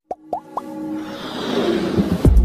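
Animated logo-intro sound effects: three quick pops rising in pitch in the first half second, then a swelling whoosh over held musical tones that builds steadily louder.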